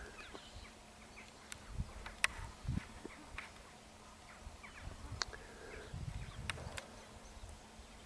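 Quiet outdoor ambience: faint low rumbles now and then, with a few scattered sharp clicks.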